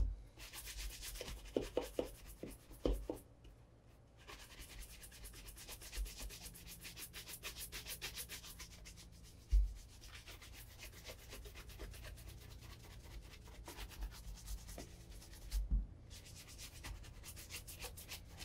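Bristle shoe brush swept rapidly back and forth over an Allen Edmonds Margate leather cap-toe shoe, a fast, continuous brushing with short breaks about 4 and 15 seconds in. A few soft thumps come near the start, about halfway and near the end.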